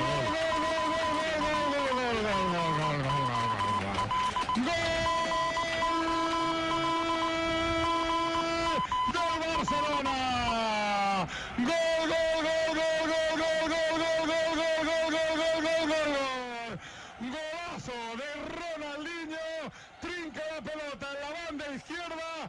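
Football commentator's long drawn-out Spanish goal shout, held on one pitch for several seconds at a time with a falling slide between the held stretches. In the last few seconds it gives way to quieter, wavering musical tones.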